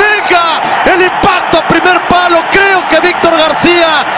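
Speech: a man commentating fast and excitedly in a raised voice, with no clear sound other than the voice.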